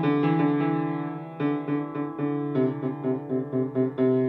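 Upright acoustic piano playing a finger-independence exercise: notes from C to G are held in two octaves while the little and ring fingers strike their keys again and again. About halfway through, the repeats settle into an even pulse of about four notes a second.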